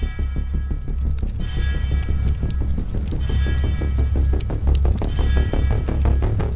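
Music for an advert, with a deep, heavy bass and a fast, even pulse, and bright high notes that come back every second or so.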